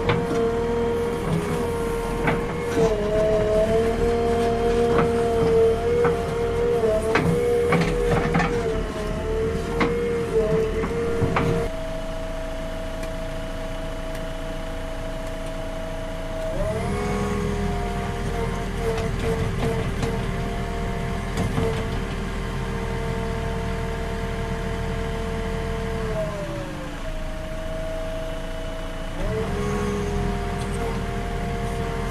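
JCB backhoe loader's diesel engine and hydraulics running under digging load, with a steady whine whose pitch falls and rises again several times as the engine speed changes. Scattered knocks come through in roughly the first ten seconds.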